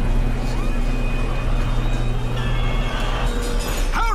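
Cartoon sound effect of a roll-up garage door rising, a steady mechanical rumble that stops about three seconds in, under tense background music.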